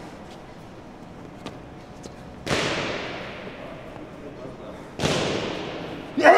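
Two sudden bursts of noise about two and a half seconds apart, each fading away over a second or two, over a low background of room noise.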